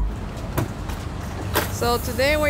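Steady outdoor traffic noise, with a sharp click about one and a half seconds in as a van's rear hatch is unlatched and swung up. A man's voice starts just before the end.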